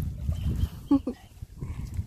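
Wind buffeting the microphone as a low rumble, with two short voiced sounds from a person about a second in.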